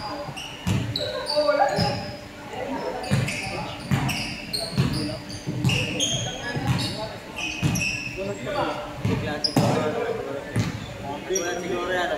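Basketballs bouncing on a hardwood gym floor, irregular thuds about once a second, with short high squeaks of sneakers on the court, echoing in a large hall. Voices talk in the background.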